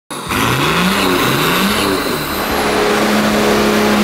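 Nissan GU Patrol engine heard through its aftermarket Manta exhaust, revved up twice in quick rising pulls, then held at a steady higher speed.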